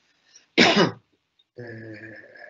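A man clearing his throat once, a short harsh burst about half a second in. From about a second and a half, a steady held hum in his voice, like a hesitation sound.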